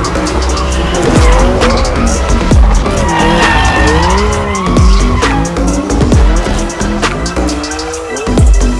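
BMW M4's twin-turbo straight-six revving up and down with tyres squealing as the car drifts through a corner, under electronic music with a heavy, regular beat.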